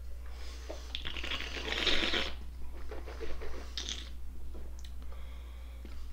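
A person sipping white wine with a long airy slurp that is loudest near its end at about two seconds, followed near four seconds by a shorter airy breath.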